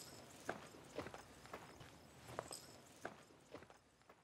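Faint footsteps on a hard surface, a step about every half second, fading out near the end.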